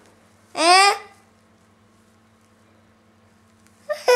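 A toddler's single short, high-pitched vocalisation about half a second in, rising in pitch, followed by only a faint steady hum.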